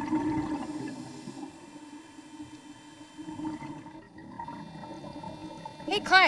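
Underwater ambience: a low, steady hum with a faint watery rush, louder in the first second or so and then settling quieter.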